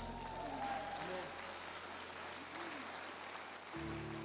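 Congregation applauding at the end of a worship song, with faint voices over the clapping. A sustained keyboard chord comes in near the end.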